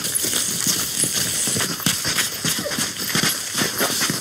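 Hurried footsteps of several people running over a dirt path, a quick irregular patter of steps.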